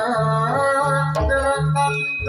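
Live jaranan accompaniment music: a held melodic line, sung or played, over a low beat that comes about every 0.7 seconds.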